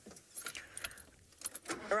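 Faint, scattered light clinks and rattles, with a woman's voice starting near the end.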